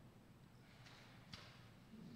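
Near silence: room tone with two faint, brief hisses about a second in and again shortly after.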